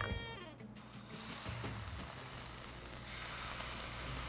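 Seasoned chicken thighs sizzling in shimmering-hot oil in a stainless steel skillet, laid in skin side down. The sizzle starts just under a second in and grows louder about three seconds in.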